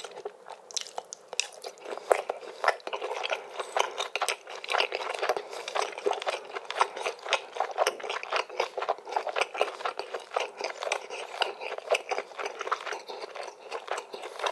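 Close-miked chewing and biting of grilled chicken: a dense, irregular run of short wet clicks and smacks from the mouth, many a second.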